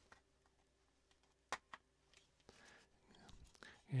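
Two sharp clicks about a second and a half in, then faint rustling handling noise, as a Zoom H2n handheld recorder is put back together in its protective cage; otherwise the room is nearly silent.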